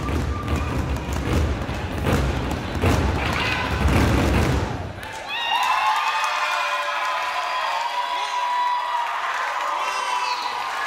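Burundian drummers beating large drums with sticks in a dense run of heavy strikes. About halfway through the drumming stops and high voices carry on calling out.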